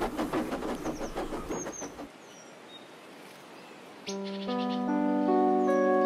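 A fast, rhythmic train clatter fades away over the first two seconds, with a few birds chirping. About four seconds in, soft sustained keyboard music begins, opening with a shimmering chime.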